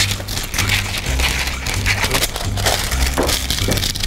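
Baking paper crackling and rustling in irregular bursts as it is cut with scissors and pressed into a round springform pan, over background music with a repeating bass line.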